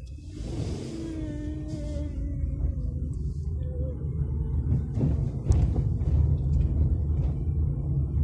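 A low rumble that grows louder, with a jump a little past halfway. Faint wavering tones sound above it in the first few seconds.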